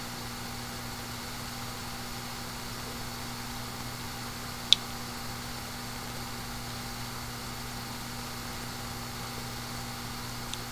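Steady low hum and hiss of room tone, with a single short sharp click about halfway through.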